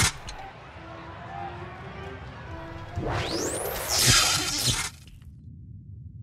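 Logo-sting sound design: faint sustained synth tones, then a rising whoosh about three seconds in that breaks into a glassy crash, fading out just before five seconds.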